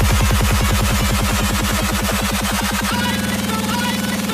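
Electronic dance music: a fast run of repeating low stabs that changes to a held low note about three seconds in.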